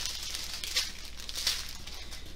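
Small plastic packets of diamond painting drills crinkling as they are handled and set down, with a couple of louder crinkles in the middle.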